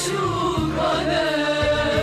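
Violins carry a sustained melody that wavers in pitch over low bass notes, an instrumental passage between sung verses.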